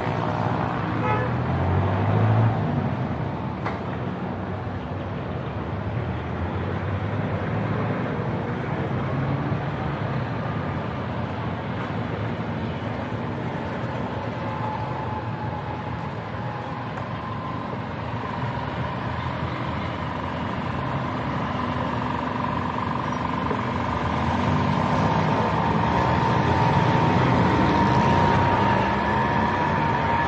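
City street traffic: vehicle engines running and passing, with a steady whine that grows louder in the last third.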